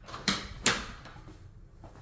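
Interior panel door being pushed open, with two sharp knocks about a third of a second apart.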